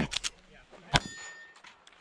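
A steel target struck by a pistol round. About a second in there is a sharp hit, and the plate rings with a clear metallic tone that fades over about half a second. Two short knocks come just before it.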